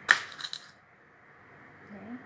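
A sharp clink followed by a few lighter clicking rattles over about half a second, as toothpicks are pulled from a toothpick holder.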